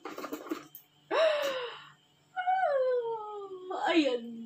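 A few light clicks and rustles as a handbag's strap clip is fastened. Then a woman's breathy gasp-like exclamation, followed by a long wordless 'ooh' that falls steadily in pitch, in excitement over the new bag.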